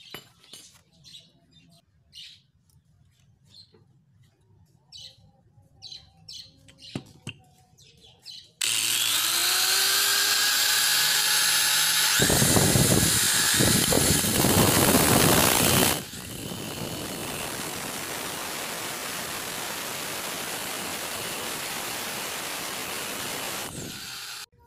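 Small birds chirping, then about a third of the way in an Orion angle grinder and an electric drill start up with a gliding whine. A nut spun on a bolt in the drill is ground round against the grinder's abrasive disc, loudest and roughest for a few seconds. The tools then run steadily and more quietly until they stop just before the end.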